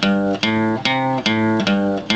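Acoustic guitar fingerpicked around an A minor chord: about five evenly spaced notes and chords, roughly two and a half a second, each left ringing, with the bass note moving from stroke to stroke in a short bass run.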